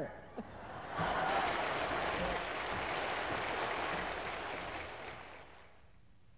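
A large audience laughing and applauding at the punchline of a comedy routine. The sound swells about a second in and fades away near the end.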